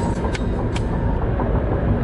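Steady low rumble of a moving car heard from inside the cabin: road and engine noise, with two faint clicks in the first second.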